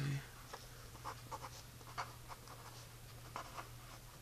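Handwriting on lined notebook paper: a series of short, faint scratching strokes as numbers and a degree sign are written. A steady low hum runs underneath.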